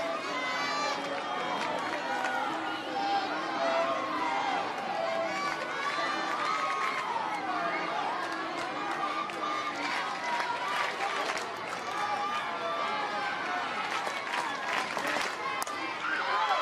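Ballpark crowd at a softball game: fans' voices calling out and cheering over steady crowd noise, single shouts rising and falling in pitch.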